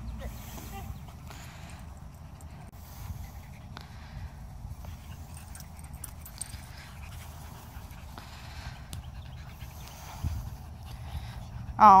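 Small dogs panting faintly over a low steady rumble.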